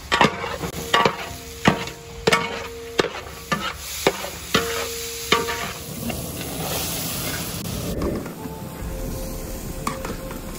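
Long perforated metal ladle stirring vegetables in a large metal cooking pot, knocking against the pot about nine times over the first five seconds, each knock with a short metallic ring. Vegetables sizzle as they fry underneath, the frying heard more plainly in the second half.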